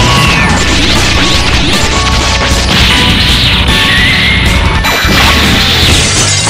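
Cartoon fight sound effects: crashes and hits layered over music, with a couple of short sweeping tones, one falling just after the start and one rising about four seconds in.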